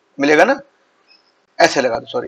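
A man's voice speaking two short phrases with a pause between them.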